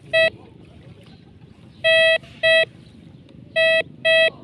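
Metal detector giving its target signal: four short, buzzy beeps, one at the start, a close pair about two seconds in and one near the end. The beeps mean that metal lies under the search coil.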